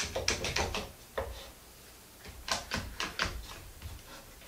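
Sharp clicks and light knocks of a wooden board being handled and set into a wooden bench-top clamping jig, in two short clusters with a quieter gap of about a second between them.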